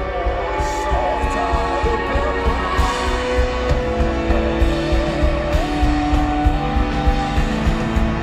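Live band playing a slow rock song: electric guitar and keyboards over a steady drum beat, with a wavering, held melody line on top.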